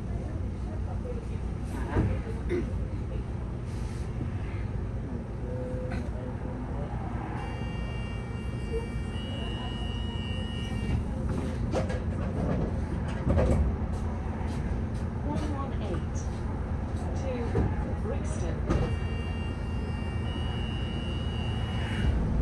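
Inside the upper deck of a London double-decker bus standing still: a steady low engine rumble. Twice a steady high tone lasts a few seconds, once in the middle and again near the end.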